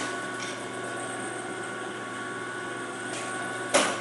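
Tablet/capsule packaging-line machinery running with a steady hum of several constant tones, broken near the end by one short, loud burst of noise.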